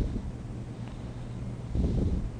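Steady low electrical hum and rumbling microphone noise, with a short knock at the start and a low thud near the end.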